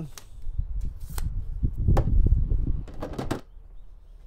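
Wind buffeting the microphone in uneven gusts, with a few light clicks and knocks of knives and tools being handled on a wooden table.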